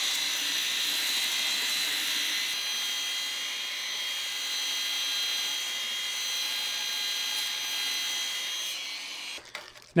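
Angle grinder driving a pipe-polishing sanding belt around a steel tube: a steady high-pitched whine with the hiss of the abrasive belt on the metal. It eases off near the end and stops.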